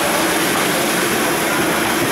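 Banana pancakes frying in oil on a flat steel griddle: a steady sizzle at an even level, mixed with the constant background noise of the street stall.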